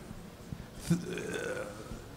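A man's drawn-out hesitation sound, a quiet 'uh', starting about a second in and held for most of a second.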